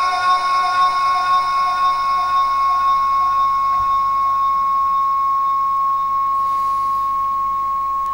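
A steady high-pitched tone with fainter overtones, held at one unchanging pitch with no wavering, through the public-address system.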